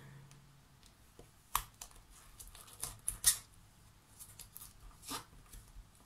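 Fingers pressing and rubbing a glossy printed sticker down onto a perspex sheet: a few short taps and brief rustling scrapes, the sharpest about three seconds in.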